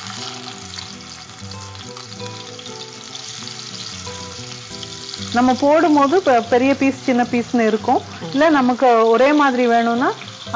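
Marinated chicken pieces sizzling as they fry in hot oil in a frying pan, a steady hiss on its own for about five seconds before a voice speaks over it.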